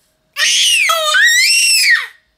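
Baby squealing: one loud, very high-pitched squeal that starts about a third of a second in, drops low for a moment in the middle, then climbs and arches back down, lasting about a second and a half.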